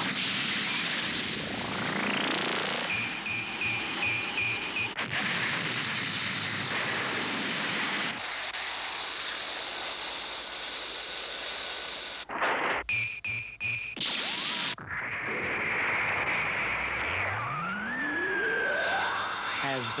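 Cartoon sci-fi sound effects of a spaceship's rocket engines: a steady rushing noise with pulsing electronic tones and rising synth sweeps, over background music.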